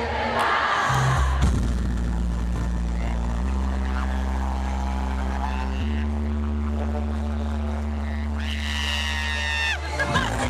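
Live concert music in an echoey arena: low, sustained drone notes that shift pitch twice, with crowd noise at the start and a higher held tone joining near the end, recorded on a camera microphone.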